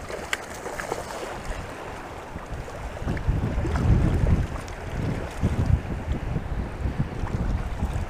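Wind buffeting the microphone over choppy water, with heavy gusts from about three to six seconds in. A couple of short splashes from a hooked fish thrashing at the surface come within the first second.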